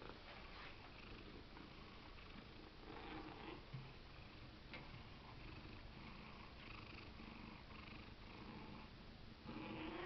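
Domestic cat purring faintly and steadily, close up.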